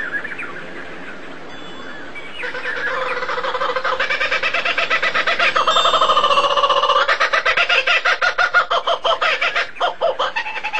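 Bird calls: a few light chirps, then from about two and a half seconds a loud, rapidly pulsing call on several steady pitches that swells and shifts in pitch a few times.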